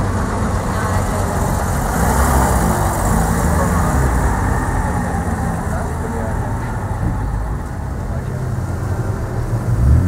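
Sports car engines, among them the Mercedes CLK 63 AMG Black Series's V8, running steadily at low revs as the cars roll slowly away, with a slight swell about two seconds in. People talk in the background.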